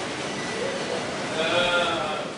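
Steady background noise in a hospital corridor, with a drawn-out, wavering voice-like call rising out of it near the end as its loudest sound.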